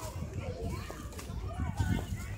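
Children's voices calling and playing in the distance, faint and scattered, over a low rumble.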